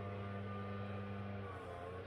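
Steady low electrical hum made of several held tones, one of which drops out about three-quarters of the way through.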